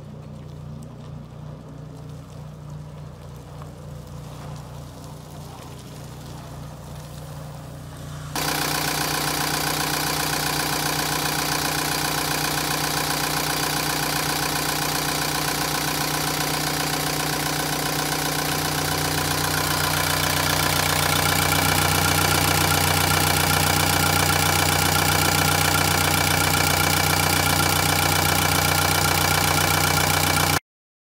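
Liebherr A 314 Litronic wheeled excavator's Deutz diesel engine idling steadily. It is heard at a distance at first, then much louder and fuller up close in the open engine bay from about eight seconds in. It grows slightly louder again about ten seconds later.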